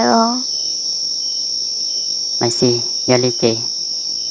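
Steady chorus of crickets, a constant high chirring. A person's voice makes short vocal sounds without clear words about two and a half to three and a half seconds in.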